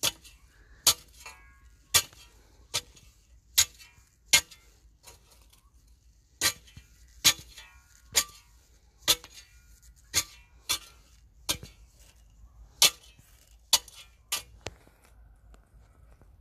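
A long-handled metal spade repeatedly chopping down into spent honeycomb-coal briquette cinders to crush them small: sharp crunching strikes about once a second, some with a short metallic ring.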